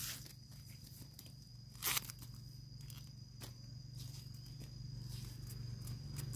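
Knife slicing into a fresh bamboo shoot and its tough husk sheaths being split and torn away, with one sharp crack about two seconds in and a few quieter snaps after it.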